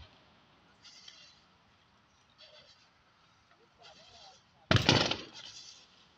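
A single sudden loud bang from a burning bus about two-thirds of the way in, dying away over about a second. Faint voices of onlookers are heard between the bangs.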